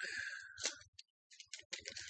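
Thin Bible pages being leafed through and turned by hand: soft, crisp paper rustles and crinkles, a few in the first half-second and a cluster near the end.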